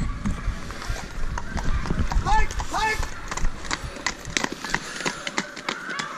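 Horse's hooves clopping on a tarmac lane, a string of irregular knocks, with two short rising cries about two to three seconds in.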